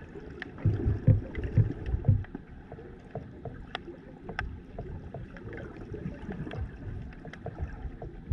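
Underwater sound as picked up by a submerged camera: low, uneven rumbling surges of moving water, heaviest as a run of thumps in the first two seconds, with scattered sharp clicks, two standing out near the middle.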